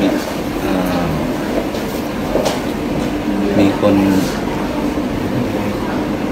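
A man's voice speaking in short, broken stretches over a steady background rumble.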